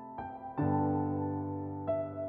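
Solo piano music played slowly: a note about a quarter second in, then a fuller chord with low bass notes struck about half a second in and left to ring, and a new higher note near the end.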